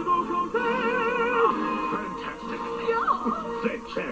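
Operatic male voice singing held notes with a strong, wide vibrato over orchestral backing music, heard through a television's speaker.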